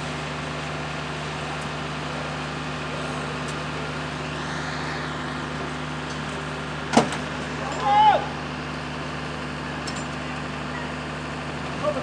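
An engine running steadily with a constant low drone. A single sharp knock comes about seven seconds in, and a short shout about a second later.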